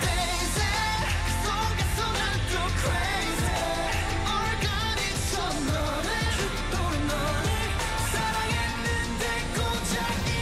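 K-pop song with male group vocals over a pop backing track with a heavy bass beat. The full beat comes back in at the very start after a brief breakdown.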